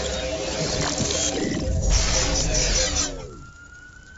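Cartoon sound effects of a powered suit of armor rebooting: a dense electronic hum and buzz that winds down with a falling pitch about three seconds in, then a faint, thin whine slowly rising as the system powers back up.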